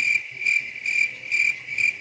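Cricket-chirping sound effect: a steady high trill pulsing a few times a second, used as the gag for an awkward silence.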